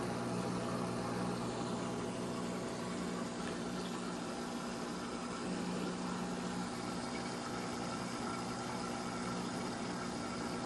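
Aquarium filter pump running with a steady electric hum over a soft, even hiss.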